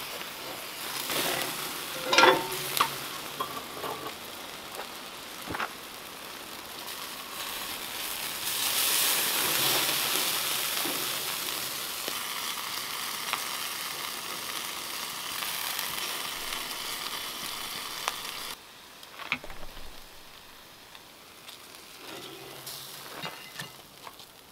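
Duck sizzling on a steel grill grate over a wood fire, the sizzle swelling in the middle and cutting off suddenly about three-quarters of the way through. A sharp metal clank comes near the start.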